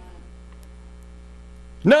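Low, steady electrical mains hum from the sound system during a pause in the preaching, with a man's voice coming back in near the end.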